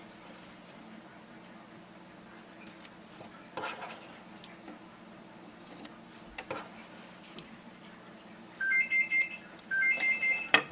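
Scissors snipping fabric, a few quiet snips as the corners of a sewn seam are clipped. Near the end come loud electronic beeps: a short lower tone, then a quick higher warbling trill, heard twice.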